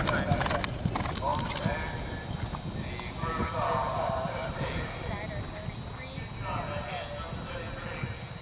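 A galloping horse's hoofbeats on grass, a quick rapid drumming that is loud for the first two seconds or so and then fades as the horse moves away.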